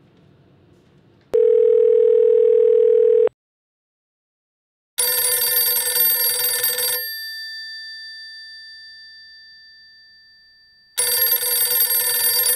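A telephone call going through: a steady ringback tone for about two seconds, then a phone ringing with a classic bell ringtone, two rings about six seconds apart, the bell tones after the first ring fading slowly.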